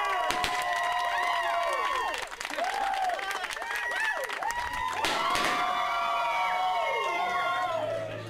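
A small crowd cheering and clapping, with long whooping shouts that fall off at the end. It dips briefly about two seconds in and swells again around five seconds.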